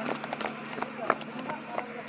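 Brick and rubble debris from a just-collapsed brick kiln chimney settling: many irregular small cracks and clatters, slowly thinning out.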